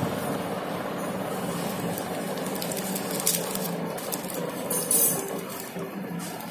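Small plastic zip bag of seeds being pinched and pulled open, the plastic handled with seeds shifting inside. There are sharp clicks about three seconds and five seconds in, the second the loudest, over a steady background hum.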